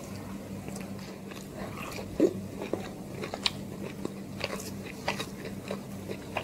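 Close-miked chewing of chicken biryani: soft wet mouth clicks and crunches scattered irregularly, one sharper and louder about two seconds in, over a steady low hum.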